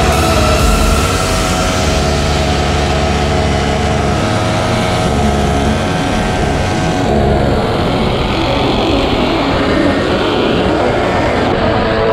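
Motor noise from stand-up scooters riding in a group, steady and loud, with music mixed underneath.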